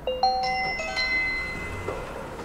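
Fingerprint door-access terminal playing its electronic unlock chime: a short melody of several beeping notes, the last note ringing out and fading, signalling that the door lock has released.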